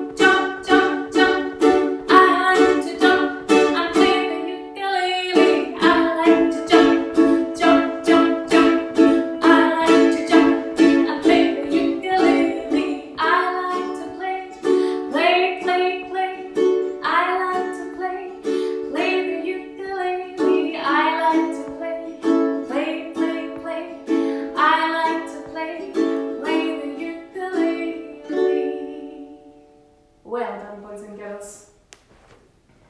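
Ukulele strummed in a steady, even rhythm, with a short break about five seconds in; the playing stops just before the end.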